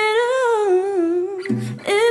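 A woman's voice holding a long, humming note with a wavering vibrato that slides slowly down in pitch, breaking off about a second and a half in, with a new note starting just before the end.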